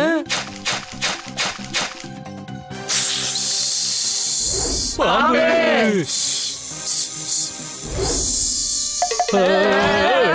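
Cartoon snake hissing: a drawn-out hiss starting about three seconds in, then several more, over a cartoon soundtrack. Before the hissing there is a quick rhythmic beat, and in the pauses a cartoon voice calls out.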